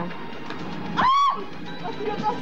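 A short, high-pitched vocal cry about a second in, rising and then falling in pitch, over steady background music.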